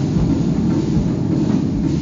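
Live Arabic fusion band playing, with drum kit, bass and keyboards, heard through an audience recording with a heavy, muddy low end.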